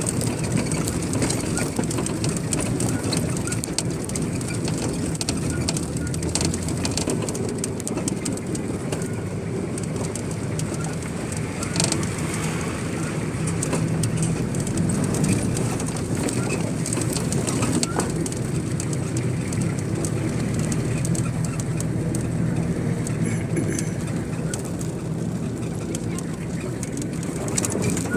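Steady motor-vehicle engine and road rumble, with indistinct voices in the background.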